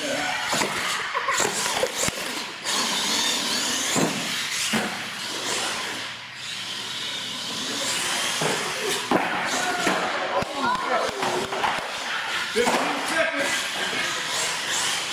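Indistinct voices of people in a large echoing hall, mixed with the whir of a radio-controlled monster truck and occasional knocks as it drives over the ramps.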